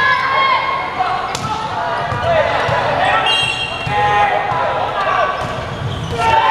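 Volleyball players shouting and calling to each other during a rally, with a sharp ball strike about a second and a half in and sneakers squeaking on the court floor near the middle.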